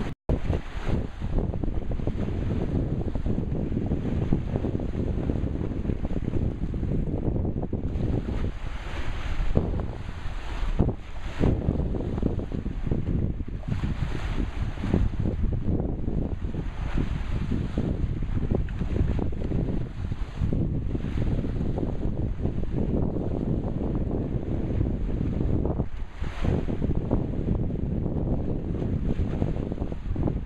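Wind buffeting the microphone: a steady low rumble that rises and falls in gusts, with a momentary cut in the sound just after the start.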